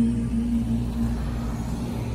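Cars passing close by on the road, a steady low rumble, with the light show's music playing softly under it on a held note that fades away.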